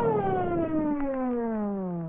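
Cartoon police siren winding down: one long tone that falls steadily in pitch and fades.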